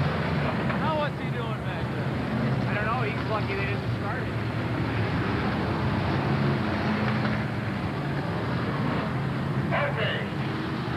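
Race car engines running steadily as stock cars circle a dirt oval track, with indistinct voices over them about a second and three seconds in.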